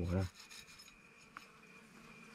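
Knife slicing through a porcupine's hide as it is skinned, a faint rasping and scraping, with one light click about a second and a half in.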